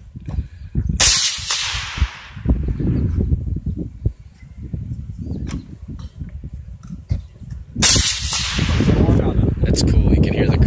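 Two rifle shots, about seven seconds apart, each a sharp crack followed by about a second of fading echo.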